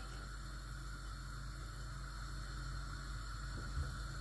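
Steady low hiss of a lit gas stove burner under a pot of boiling water, with a faint hum underneath and one soft knock near the end.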